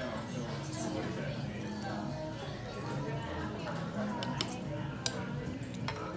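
Restaurant dining-room ambience: a steady murmur of voices with music underneath. Three short sharp clinks, typical of chopsticks and spoons against ceramic ramen bowls, come near the end.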